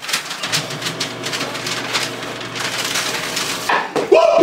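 Office paper shredder running and chewing through paper, a steady grinding motor noise that cuts off suddenly near the end.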